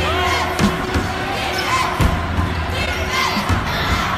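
A basketball bouncing on a hardwood gym floor, a few sharp bounces about a second or more apart, with short high squeaks and crowd voices in the large, echoing gym.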